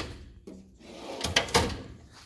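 A steel tool-chest drawer sliding on its runners, building up over about half a second and ending in a couple of sharp knocks about a second and a half in.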